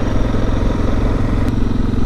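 Suzuki DR650's single-cylinder four-stroke engine running at a steady, even pace.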